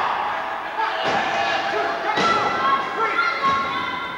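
About three dull thuds of impacts in a wrestling ring, bodies and blows landing on the mat, over the shouting voices of a small crowd.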